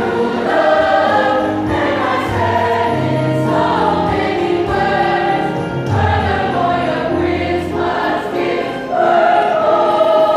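A large school choir singing in parts, sustained chords moving from note to note over low held notes. The choir swells louder about nine seconds in.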